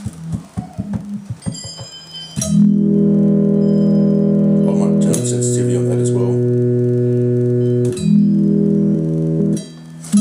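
Homemade two-string analog pipe guitar synthesizer played by touch. It starts with about two seconds of short, choppy notes, then holds steady buzzing synth tones, changing note about five seconds in and again near eight seconds, and cuts off shortly before the end.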